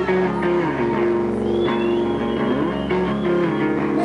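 Rock band playing live, guitar to the fore, with long held notes and a few sliding bends.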